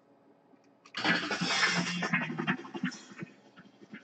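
Audio from a phone played through a freshly paired Bluetooth speaker starts abruptly about a second in: a loud, noisy passage of about a second and a half, then quieter, scattered sound.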